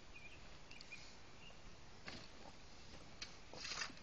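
Faint ambience with a few short bird chirps in the first second and a half, then soft scrapes of soil. The loudest sound, near the end, is a brief gritty rush of loose dirt being shovelled into the trench.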